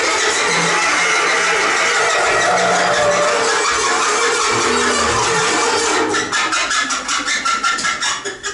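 Free-improvised ensemble music from bass clarinet, cello and drums making a dense, noisy, rumbling texture. About six seconds in it thins into a rapid run of taps, roughly seven or eight a second.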